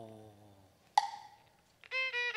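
A Cantonese opera sung phrase fading out, then a single sharp percussion knock from the accompanying band about a second in. The string accompaniment starts its next phrase near the end.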